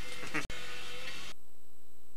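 Hiss on the audio of camcorder tape playback captured through a USB capture device, with a brief dropout about half a second in. A little over a second in the hiss cuts off suddenly, leaving a faint steady electrical hum.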